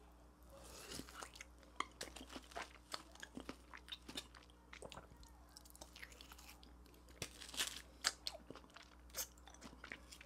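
A man biting into and chewing soft, creamy durian flesh: faint, scattered wet mouth clicks and smacks.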